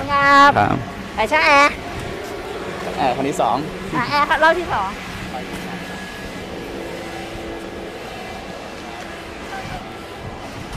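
A voice calls out loudly in four short, wavering phrases over the first five seconds. The sound then settles into quieter background hubbub with a faint steady hum.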